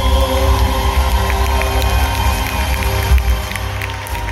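An Irish folk band's final held chord, with accordion and acoustic guitar, ringing out live. The audience begins to cheer and clap from about a second and a half in.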